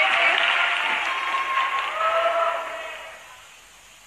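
Audience cheering and applauding, with a few drawn-out shouts, dying away over the second half.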